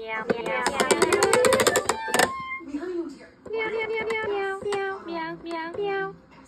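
Toy cat-faced electronic keyboard making electronic sounds. A fast, busy run in the first two seconds is followed by a few held notes that step down in pitch.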